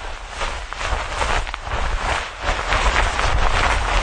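Wind buffeting the microphone: a loud rushing noise with a low rumble, gusting unevenly and growing louder.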